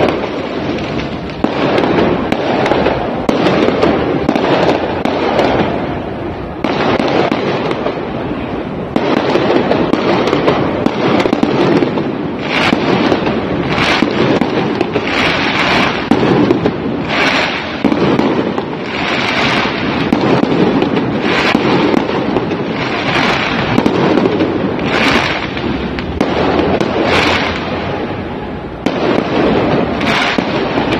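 Aerial fireworks bursting in a continuous barrage, sharp bangs coming in quick succession over a constant din, the bangs sharper and about one a second through the second half.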